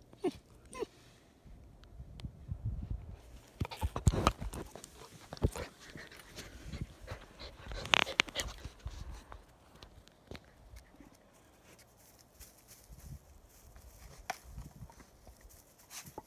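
German Shepherd puppy panting close to the phone, with irregular knocks and rustles as it bumps against it; the loudest knocks come about four and eight seconds in.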